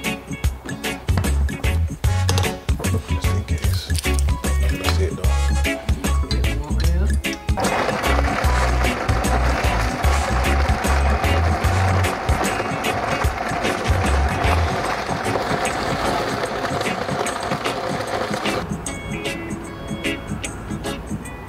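Background music with a steady beat. About a third of the way in a countertop blender starts abruptly and runs at speed with a steady hum, blending vegetables into a puree. It cuts off suddenly near the end.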